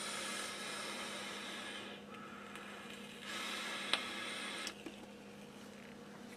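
Long draw on an e-cigarette: a breathy hiss of air pulled through the atomizer for about two seconds, then a shorter hissing breath of about a second and a half as the vapour is blown out, with a sharp click partway through it.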